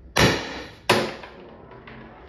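CO2-powered Salt Supply S2 less-lethal launcher, its CO2 restrictor drilled to 1.6 mm, firing a round: a sharp pop, then a second sharp bang under a second later.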